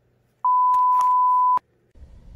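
A single steady electronic bleep: one pure high tone lasting about a second, starting about half a second in and cutting off abruptly. It is the kind of tone added in editing as a censor bleep or transition sound.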